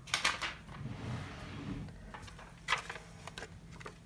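Craft supplies being handled on a tabletop, likely a sheet of adhesive rhinestones being picked up: a cluster of short clicks and rustles at the start, and another click a little before three seconds in.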